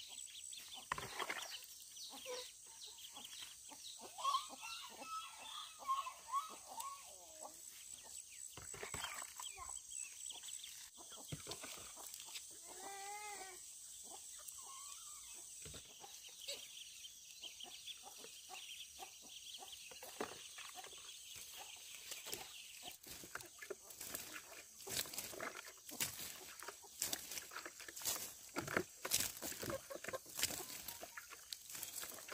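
Chickens clucking now and then, a short run of calls about thirteen seconds in, over scattered footsteps and handling clicks, with a steady high-pitched whine underneath.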